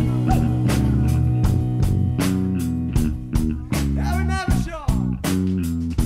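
Live band playing an instrumental passage: a stepping bass line and guitar over a steady drum beat, with a wavering melodic line coming in about four seconds in.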